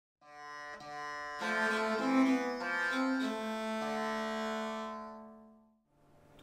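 Early-music instrumental ensemble playing a few sustained notes that step into a held chord, which fades out near the end.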